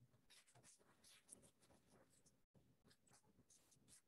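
Faint, irregular scratches and taps of a stylus writing on a tablet's glass screen.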